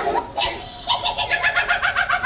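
A man imitating a bird's cooing call: a short call, then a fast run of short repeated notes, about seven a second, starting just past a second in.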